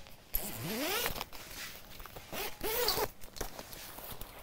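Zipper on a quilted puffer coat being pulled in two runs, about half a second in and again near three seconds, the pitch rising and falling with each pull.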